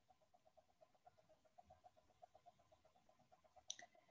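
Near silence: quiet room tone with a faint, fast, even ticking of about seven ticks a second, and one brief faint click near the end.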